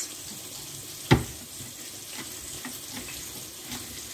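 Salmon fillets frying in oil in a pan: a steady, soft sizzle, with one sharp knock about a second in.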